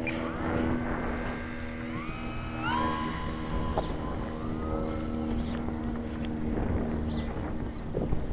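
Radio-controlled model plane's motor and propeller whining as the throttle is opened for a takeoff from grass, the whine rising in pitch in a few quick steps and then holding steady. The whine grows fainter near the end as the plane climbs away.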